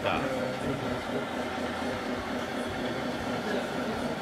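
Indistinct background voices, several people talking at once in a hall, with no clear sound from the model trucks standing out.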